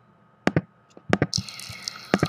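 A few sharp clicks. Then, about 1.3 s in, a VLF radio recording starts playing through the computer: dense crackling and popping of lightning sferics over a steady hiss.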